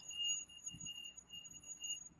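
Faint background of the recording with a steady high-pitched electrical whine made of several thin tones, over low hiss.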